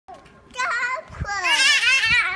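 A toddler's high-pitched, excited vocalizing without clear words at play: a short call about half a second in, then a longer call with wavering pitch through the second half.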